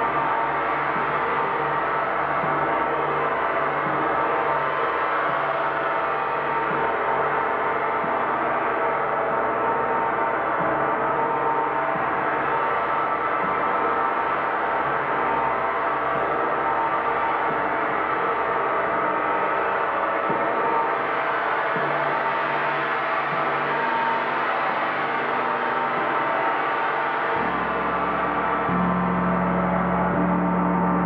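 Large suspended gongs played with a soft felt mallet: a continuous, dense, shimmering wash of many overlapping ringing tones at a steady level. Near the end a deeper gong tone comes in underneath.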